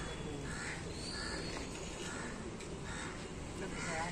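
A bird calling repeatedly in a series of short calls over steady background noise.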